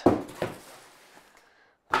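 Cardboard shoebox being handled: a sharp knock at the start and a smaller one just under half a second later, with a short rustle that fades away over the next second.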